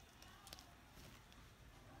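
Near silence: room tone, with a couple of faint ticks about half a second in.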